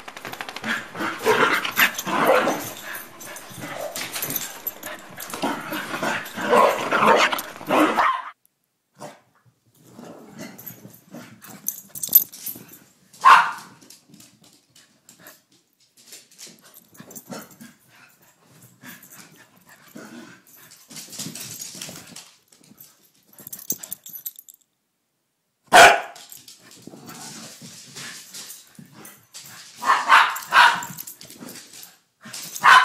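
Dogs barking in rough play: about eight seconds of dense barking and scuffling, then scattered barks with a few sharp loud ones.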